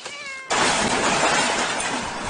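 A cat gives a short meow, then about half a second in a loud, harsh, noisy sound follows for over a second before fading.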